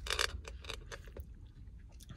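A short slurp of slushy drink sucked up through a plastic straw about a quarter second in, followed by a few faint clicks and rustles from the plastic cup, over a low steady rumble.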